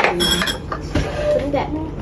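Metal spoon and jars clinking against glassware while pancake batter is stirred in a glass bowl, with a cluster of sharp clinks right at the start.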